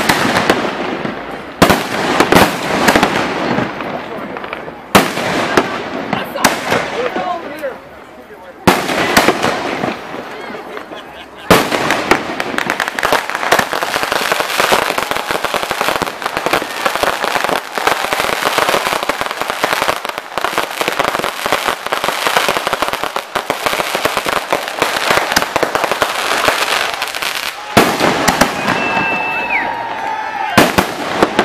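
Aerial fireworks going off: several loud bangs a few seconds apart, then from about twelve seconds in a long stretch of dense, rapid crackling from crackling stars, which dies down near the end.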